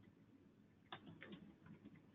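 Near silence, with a handful of faint, short clicks in the second half.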